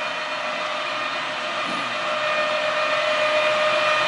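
Machinery running steadily: an even whirr with a steady whine, growing slightly louder in the second half.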